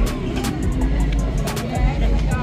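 Loud music with a heavy, constant bass and sharp percussion hits playing over a loudspeaker, with crowd voices mixed in.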